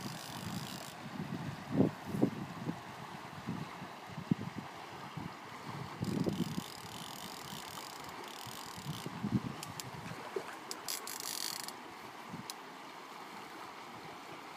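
Steady rush of a fast-flowing salmon river, with wind buffeting the microphone in irregular low thumps. Two short, higher rasping bursts stand out, about six and eleven seconds in.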